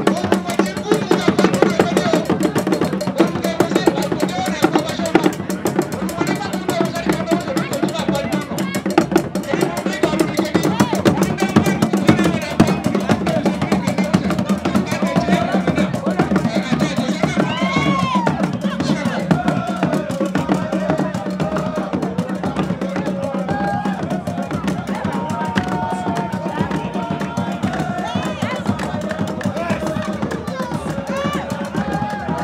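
Live traditional drum and percussion ensemble playing a fast, steady, driving rhythm, with voices over it.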